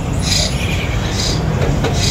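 A small bird chirping over and over, a short high call about once a second, over a steady low rumble of background noise.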